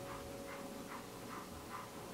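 Golden retriever panting softly with its mouth open, an even rhythm of breathy puffs about two to three a second.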